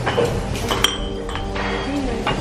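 Background music over the clink of dishes and cutlery, with a sharp ringing clink a little under a second in and a faint murmur of voices.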